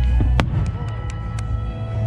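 Aerial firework shell bursting with one sharp bang about half a second in, followed by a few fainter cracks, over steady music.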